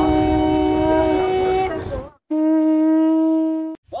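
Conch shell trumpet blown in two long, steady notes. The first note fades out about two seconds in over a low rumble. After a brief gap, a cleaner second note is held for about a second and a half and stops abruptly.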